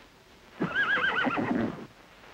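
A horse whinnying once: a wavering call a little over a second long that starts about half a second in and drops in pitch toward the end.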